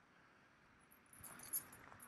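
Near silence, with faint scattered high-pitched ticks in the second half.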